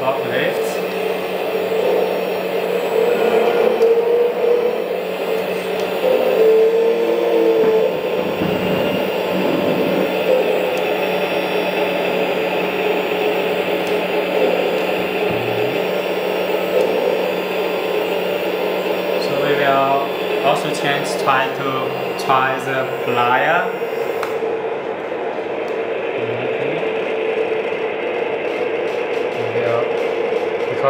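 The hydraulic pump of a 1/14 Huina K970 RC excavator runs with a steady motor whine; its pitch wavers a few seconds in as the arm and attachment are worked.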